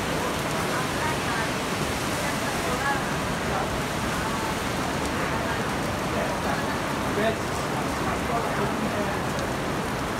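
Heavy rain falling steadily on a wet street and pavement, an even hiss of rain that never lets up.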